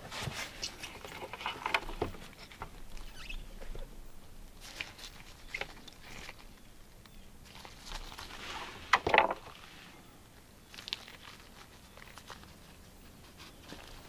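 Gloved hands handling small resin prints in a perforated metal cleaner basket: scattered light clicks, taps and glove rustling, the loudest rustle about nine seconds in.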